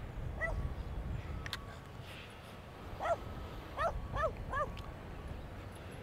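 Dog barking: a single short bark about half a second in, then four short barks in quick succession from about three seconds in.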